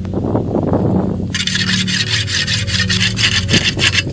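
A sickle blade being sharpened on a whetstone: steel scraping across stone in rapid back-and-forth strokes, several a second, growing louder and faster a little over a second in.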